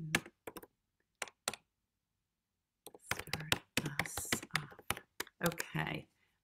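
Rapid clicks of typing on a computer keyboard, heard over a video-call connection. The sound cuts out completely for about a second in the middle, then the typing resumes under a low voice.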